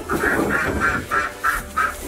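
A duck quacking in a quick, even series of about six quacks.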